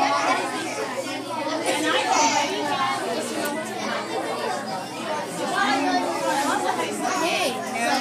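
Children's chatter: many voices talking over one another at once, a steady background murmur with no single speaker standing out.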